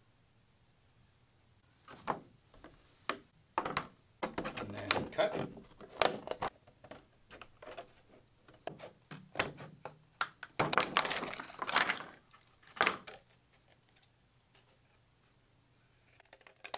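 Scissors cutting stiff clear plastic packaging, the sheet crackling and snapping as it is cut and handled: a run of irregular sharp clicks and crinkles that starts about two seconds in and stops a few seconds before the end.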